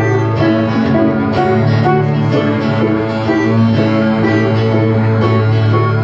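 Instrumental passage from a live acoustic trio: banjo and acoustic guitar picking over an upright bass, with no singing.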